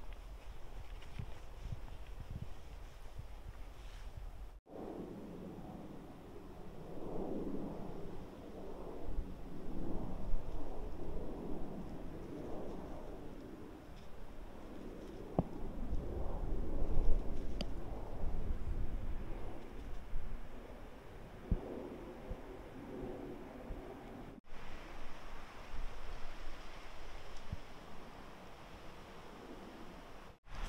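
Footsteps on a sandy, pine-needle trail for the first few seconds. Then wind gusts through pine trees and buffets the microphone, with a low rumble that swells and dies away, strongest about halfway through.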